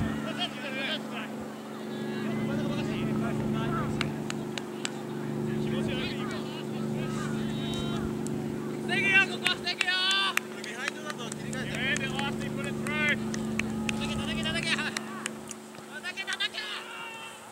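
Footballers shouting and calling to each other across an open field, loudest in a cluster of calls a little past halfway, over a steady low mechanical hum, with a few sharp knocks.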